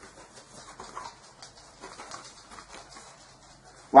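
Faint rustling of paper as a folded greeting card is handled and opened, with a few small soft crinkles.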